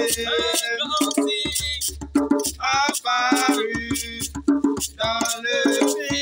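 Singing voices over hand percussion, with rattles or shakers and drums keeping a steady beat, in a scout song.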